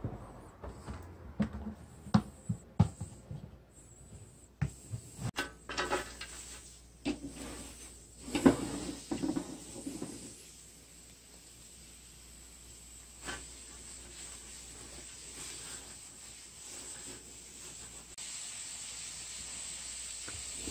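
Knocks, clatter and rustling as fresh winged spindle tree leaves are handled and piled into an electric frying pan, then a faint steady hiss from the pan as it starts heating the leaves for pan-roasted tea. The hiss grows slightly near the end.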